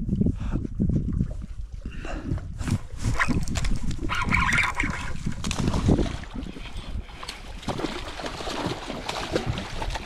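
Wind buffeting the microphone, with a hooked trout splashing and thrashing at the surface close to the boat; a brief higher-pitched sound comes about four seconds in.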